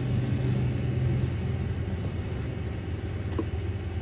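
Steady low rumble under handling noise and soft rustling of a fabric dust bag as a roller skate is pulled out of it, with one light click near the end.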